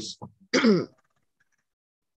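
A person clearing their throat once, a short throaty sound about half a second in.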